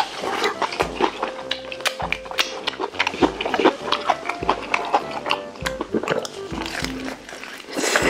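Fried chicken being crunched and chewed close to the microphone, with many sharp crunches. Background music with a steady low beat plays underneath.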